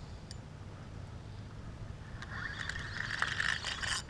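Faint rasping of a spinning reel being cranked against a hooked snook, coming in about halfway and joined by a few light clicks, over a steady low rumble.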